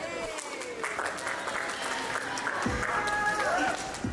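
Excited voices whooping and calling out, with hand clapping, after a song has ended; a dull thump comes about two-thirds of the way in.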